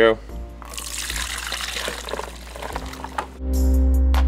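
Red wine marinade, with the short ribs and chopped vegetables, poured and tipped into a glass bowl: a splashing rush lasting about three seconds. Near the end, background music comes in loudly.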